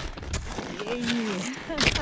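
Boot steps and trekking poles in snow, making short crunches and clicks, with a brief quiet voice about a second in.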